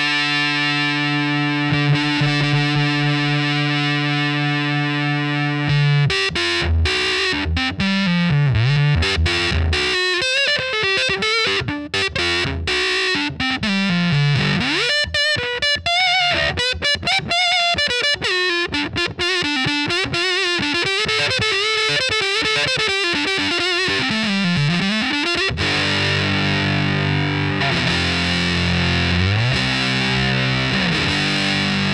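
Electric guitar through a Sola Sound Tone Bender Mk IV germanium fuzz pedal: a fuzzed chord rings for about six seconds, then a fast lead line with string bends on the neck pickup, then another held chord near the end.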